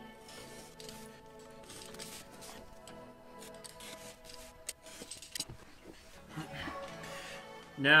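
Box cutter blade slicing through a paper map along a steel ruler in a series of short strokes, over steady background music.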